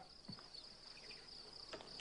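Faint, steady, high-pitched chirring of insects in the background ambience of an outdoor daytime scene, cutting off suddenly at the very end.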